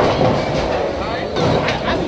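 Bowling alley lane noise: a bowling ball rumbling along the lane with pins clattering, and a few sharp knocks about one and a half seconds in. Voices chatter in the background.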